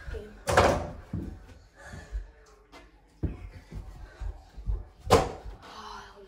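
A small basketball hitting the backboard of an over-the-door mini hoop, rattling the door: two loud hits, about half a second in and again near the end. Softer thuds come between them.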